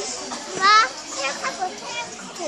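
A young child's high-pitched, wavering squeal about half a second in, with other children's voices around it.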